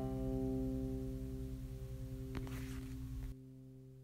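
Banjo's final C major chord ringing on and slowly dying away after the clawhammer playing stops. There is a faint click a little past halfway, and the ring drops suddenly near the end.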